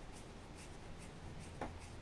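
Faint scratching and rubbing of hands handling a small screw and a hand screwdriver, fitting the screw to the screwdriver tip, with a small click about one and a half seconds in.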